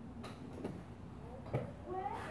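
A lull with three faint, sharp clicks: two in the first second and one near the end.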